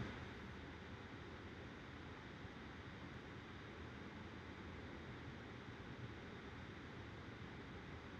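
Faint, steady hiss of room tone and recording noise, with no distinct sound events.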